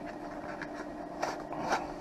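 Eyeglass packaging being handled by hand: soft scraping and rustling, with a couple of light ticks a little past one second in and near the end, over a faint steady hum.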